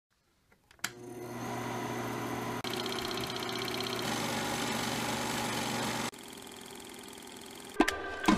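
Bell & Howell film projector switched on with a click about a second in, its motor then running with a steady hum. Rapid ticking from the film mechanism joins a couple of seconds later. The running drops to a quieter level about six seconds in, and a sharp hit comes just before the end.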